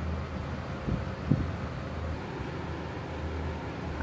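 A steady low background hum, with two faint brief knocks about a second in.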